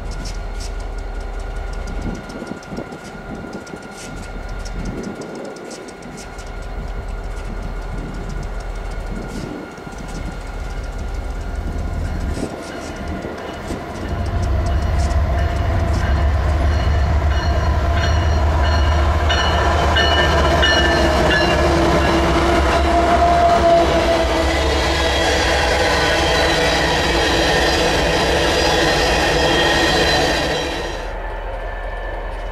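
Canadian Pacific EMD SD40 locomotives idling at a standstill with a low steady hum. About halfway through, an oncoming CP freight train's locomotives pass close by and the sound grows loud. Tank cars then roll past with steady wheel-on-rail noise and higher wavering tones.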